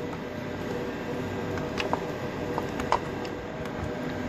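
Steady low room hum with a few faint, sharp clicks from handling the desk phone and its barrel power plug.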